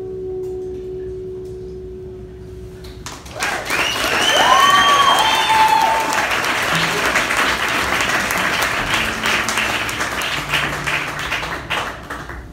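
The last note of the song, on keyboard and acoustic guitar, rings out and fades. About three seconds in, a small audience breaks into applause and cheering, with a few high gliding calls early on, and the clapping tapers off toward the end.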